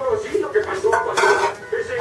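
Dishes, pots and cutlery clattering in a kitchen, with a louder clatter of metal and crockery a little past a second in.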